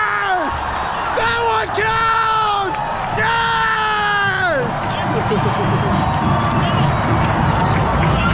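A man screaming in three long held yells, each sliding down in pitch at its end, celebrating a goal, followed by a stadium crowd cheering.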